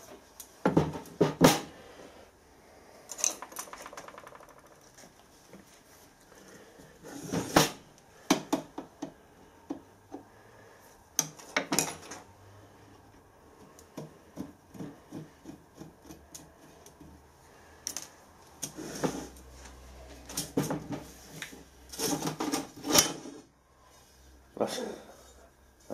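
Handling sounds of a heavy solid-brass Hopkinson pressure gauge and wooden blocks on a workbench: irregular knocks and clinks as the blocks are shifted and the gauge case is set down and turned. The loudest knocks come in the first two seconds and again near the end.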